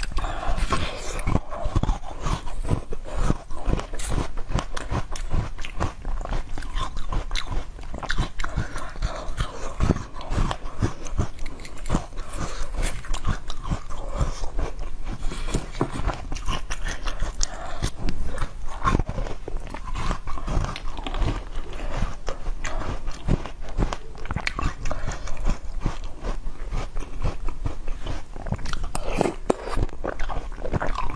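Close-miked biting and chewing of pieces of pale green melon, a dense run of wet, crisp crunches and mouth clicks without pause.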